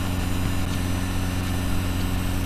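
A steady low hum with a constant hiss above it, even and unchanging throughout.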